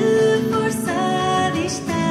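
Live band music: a song with long held melodic notes over a steady lower accompaniment.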